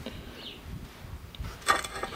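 Faint handling noise of a hand on a cast-iron stove door with a chrome damper disc: a low rumble, a small tick about one and a half seconds in, and a short louder sound near the end.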